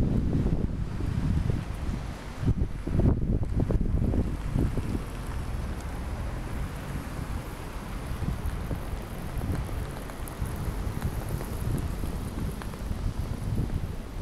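Wind buffeting the microphone in gusts over the steady noise of street traffic below. The gusts are strongest in the first few seconds, then ease into a steadier traffic noise.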